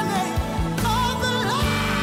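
Gospel song playing: a lead singer's melody sliding between notes over a band with a steady bass line.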